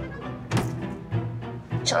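A single thunk about half a second in: a shoe dropped onto the floor as it is put on. It sits over low, steady string background music.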